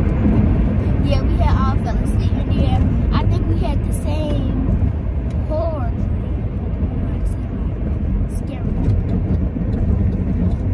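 Steady road and engine rumble inside a moving car's cabin, with a child's voice speaking in short snatches over it during the first half.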